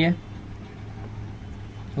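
A spoken word ends just after the start, then a steady low hum runs under faint room noise until speech resumes at the end.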